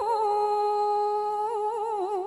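A woman's voice, heard through a microphone, holding one long sung note while chanting verse. The note is steady at first and breaks into vibrato about a second and a half in.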